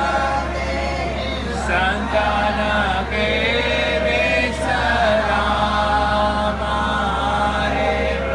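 A group of voices chanting a devotional aarti hymn in unison, with a steady low hum underneath.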